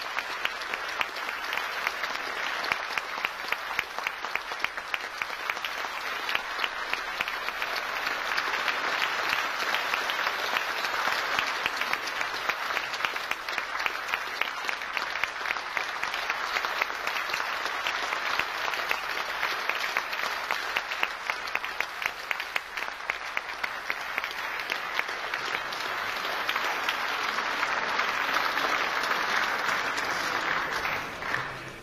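Concert-hall audience applauding steadily, with sharp individual claps close to the microphone standing out; the applause swells near the end.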